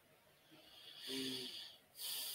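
A man's breath close to the microphone, starting about half a second in and stopping just before the end, with a brief low hum partway through.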